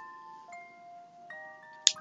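Soft background music of chime-like bell notes, a new note struck about every half second and each ringing on as it fades.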